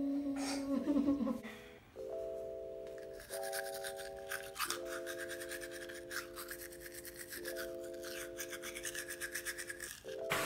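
Toothbrush scrubbing teeth in quick back-and-forth strokes, from about three seconds in, over background music of slow held chords.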